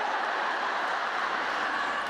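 Audience applauding steadily after a stand-up punchline.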